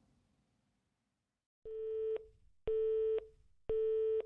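Telephone busy tone: a steady single-pitch beep repeating about once a second, half a second on and half a second off, starting about one and a half seconds in after near silence. It signals that the call is not getting through.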